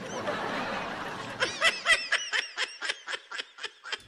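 A person laughing: a breathy stretch, then a run of short 'ha' bursts, about five a second, that fade out near the end.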